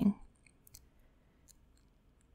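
A woman's speaking voice trails off at the very start, then near silence with a few faint, short clicks.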